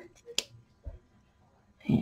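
A single sharp snip of small scissors cutting through a piece of fabric, about half a second in.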